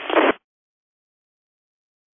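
Mostly dead silence: an FM amateur radio transmission, the end of a voice over a steady hiss, cuts off abruptly about a third of a second in as the receiver's squelch closes.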